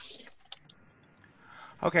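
A few light, sharp clicks, like a computer keyboard or mouse picked up by a video-call microphone, in the first second. A voice says 'okay' near the end.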